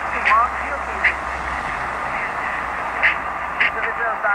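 Long-distance mediumwave AM reception of All India Radio on 1566 kHz: a weak news-reader's voice, too faint to make out, under steady hiss and static. Several crackles cut through, and the sound has the narrow, muffled band of AM radio.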